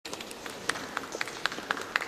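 Faint hall background with a steady run of light clicks, about four a second.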